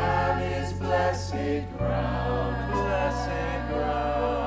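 Mixed choir singing a choral arrangement of a chant in harmony over a sustained low accompaniment that changes chord about two seconds in.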